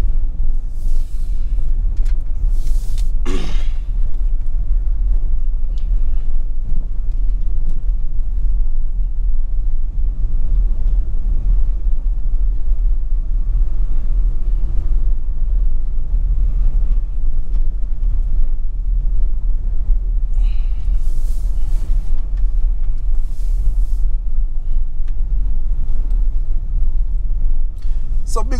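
Wind buffeting the microphone: a loud, steady low rumble, with a few brief hissing rushes near the start and a little after twenty seconds.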